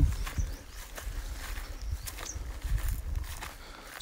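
Footsteps on dry grass and soil, a few soft steps, over a low rumble on the microphone.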